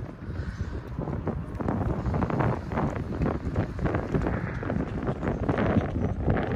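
Wind buffeting a phone's microphone outdoors: a low, uneven rumble that rises and falls with the gusts.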